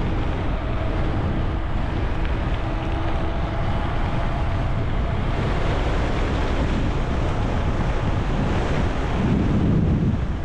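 Steady wind rush on a bicycle-mounted GoPro microphone while riding a mountain bike at speed along a paved road.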